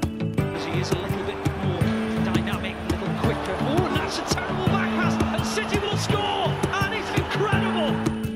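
Background instrumental music with a steady beat, over the noise of a football stadium crowd that comes in about half a second in.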